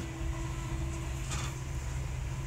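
Inside a passenger train carriage on the move: the steady low rumble and hum of the running train, with a short hiss just after a second in.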